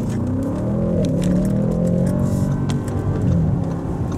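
The 2024 Audi S8's twin-turbocharged 4.0-litre V8 pulling under acceleration, heard from inside the cabin. Its tone climbs over the first second, holds, then dips briefly about three seconds in.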